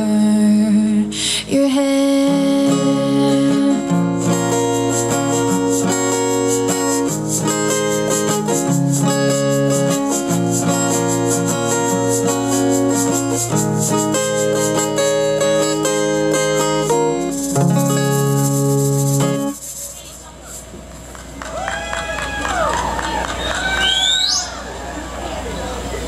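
Acoustic guitar strumming chords through the instrumental outro of a song, stopping about twenty seconds in. After it, people's voices from the crowd, with a rising whoop near the end.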